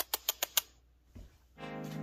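A rapid string of about six lip-smacking kiss sounds, blown kisses, in the first half-second. After a short pause, background music with a low sustained chord comes in about one and a half seconds in.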